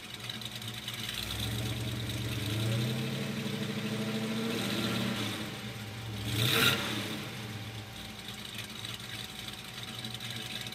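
Built 454 cubic inch big-block V8 running through headers and a side-exit dual exhaust. It rises from idle about a second in and holds higher revs, falls back, gives one short sharp blip of the throttle about six and a half seconds in, the loudest moment, then settles into a steady idle.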